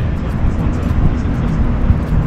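Wind buffeting the camera's microphones on an open riverside walkway: an irregular low rumble, louder than everything else.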